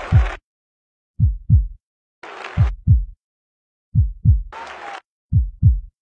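Heartbeat-like sound effect: pairs of deep thumps, about one pair every 1.4 seconds, five pairs in all. Three short bursts of hiss fall between some of the pairs.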